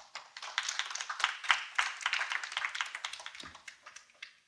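Audience applauding: a round of clapping that swells in the first second or two and fades out near the end.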